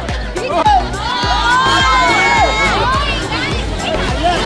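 A crowd of voices shouting and calling out over loud dance music with a steady beat.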